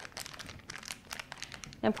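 Clear plastic decorating bag crinkling under the fingers as it is worked around a metal piping tip: a run of soft, quick crackles.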